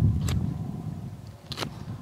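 Knife cutting the head off a skinned rabbit: low rustling handling noise with two short sharp clicks, the louder one about one and a half seconds in.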